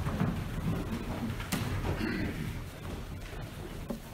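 Congregation shuffling and rustling in the pews, with scattered low knocks and a sharp click about a second and a half in.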